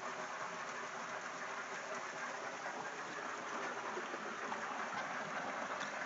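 Spring water pouring from a pipe spout into a shallow rock pool: a steady, even rush of falling water.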